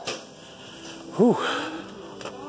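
A man's short exclaimed "whew", its pitch rising then falling, over a faint steady background hum.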